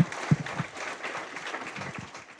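Audience applauding. Near the start there are two dull thumps from the handheld microphone being handled, about a third of a second apart.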